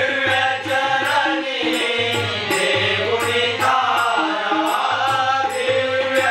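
Marathi devotional bhajan: singing over harmonium, tabla and a steady beat of jhanj hand cymbals.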